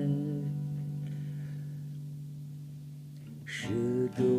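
Acoustic guitar chord left ringing and slowly fading, then a fresh strum about three and a half seconds in as the song's closing line resumes.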